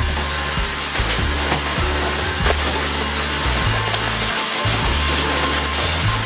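Background music with a repeating bass line, over the steady rushing hiss of a Dyson cordless stick vacuum cleaner running.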